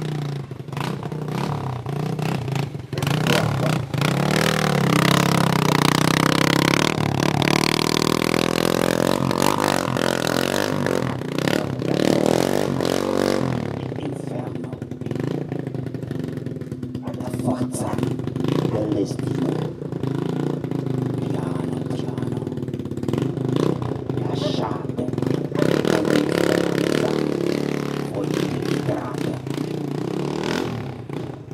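Motorcycle engine running, its pitch rising and falling between about 4 and 13 seconds in, over continual metallic clattering and scraping.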